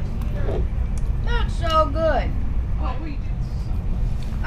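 Steady low rumble of a moving passenger train, heard from inside the coach. A voice speaks briefly over it from about a second in to the middle.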